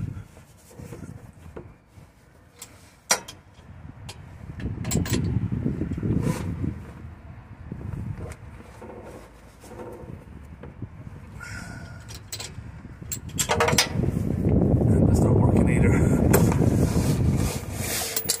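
A socket, extension and long bar being worked under a van against a seized DPF fuel vaporizer fitting that will not undo. It gives a few sharp clicks and knocks and rough scraping, with a louder rough noise lasting a few seconds near the end.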